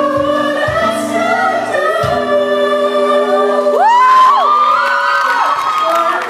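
Live acoustic band with several voices singing together over guitars, drum hits in the first couple of seconds. About four seconds in, one voice swoops up to a high held note.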